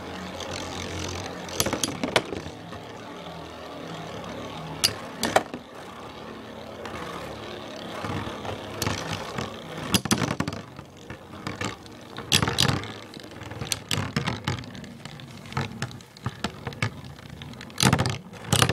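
Two Beyblade spinning tops whirring steadily on a plastic stadium floor, with sharp plastic-and-metal clacks each time they strike. The clacks come at irregular moments and bunch up around the middle and near the end.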